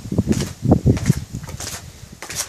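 Irregular bumps and rustles, several a second, from a person making their way down a steep stairway: footsteps and the phone being handled close to the microphone.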